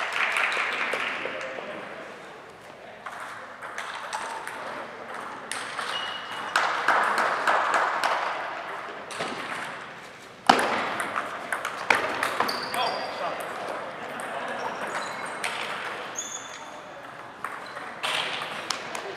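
Table tennis balls clicking off paddles and the table in a large gym hall, over the chatter of many voices. The sharpest, loudest hits come about ten and twelve seconds in, each followed by a short echo.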